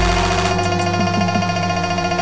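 Dense layered electronic music: sustained synthesizer drone tones over a steady bass, with a deep bass hit at the start and a few short falling blips about a second in.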